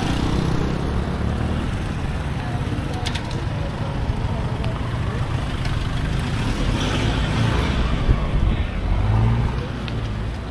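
Road traffic passing close by: motorcycles, then a pickup truck going past about halfway through, over a heavy low rumble.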